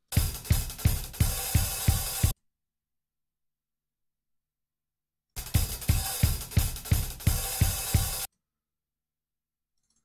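Multitrack recording of a live drum kit, kick hits and cymbals, played back in two short stretches of about two and three seconds, each cut off abruptly into dead silence. The drummer's timing is not yet straightened out: the clip is being auditioned while its warp markers are reset by hand.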